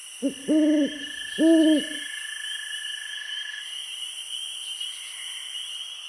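An owl hooting three times in quick succession in the first two seconds, a short hoot then two longer ones, over a steady high-pitched chorus of night insects.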